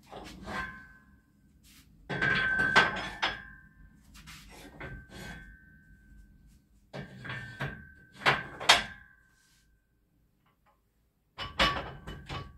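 Metal gym equipment being handled: several bursts of clanks and knocks, some with a short ringing note, separated by quiet gaps. The loudest come about two to three seconds in and again near nine seconds.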